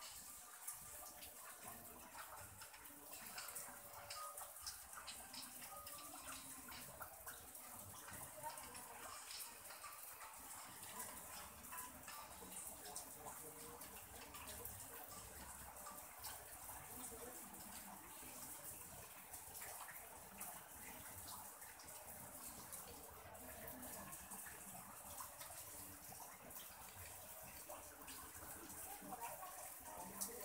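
Near silence: faint steady room tone and recording hiss, with a few faint ticks.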